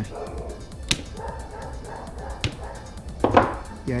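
Plastic battery cell holder being snapped with pliers: three sharp cracks, about a second in, about two and a half seconds in, and the loudest a little past three seconds. The plastic retaining points are being broken off so the dead cell can come out of the pack.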